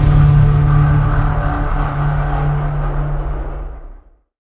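Logo sting sound design: a loud, steady low drone rings on after the hit, slowly dying away and cutting off near the end.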